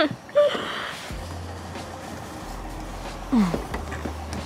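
A woman's short breathy grunts and gasps as she strains to work a car's bonnet release catch, over a low steady hum.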